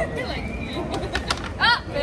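Carrom striker flicked across the board, clacking into the coins in a quick cluster of clicks about a second in, followed by a short, loud vocal exclamation near the end.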